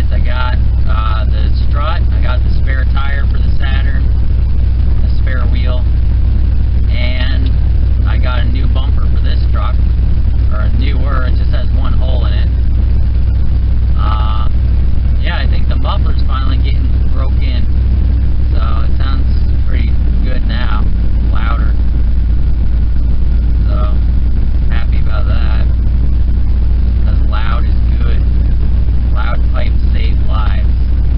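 Steady low rumble of engine and road noise heard from inside a moving vehicle's cab, changing slightly about twenty seconds in.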